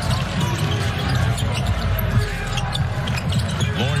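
Basketball game sound on a hardwood court: the ball being dribbled amid steady arena crowd noise, with music in the background.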